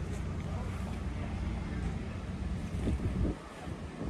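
Wind buffeting the microphone, a rough low rumble that drops away suddenly a little after three seconds in.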